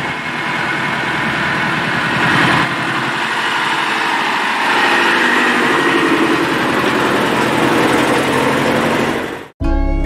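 Truck engine running close by, with a rapid, even firing pulse; the sound cuts off suddenly near the end.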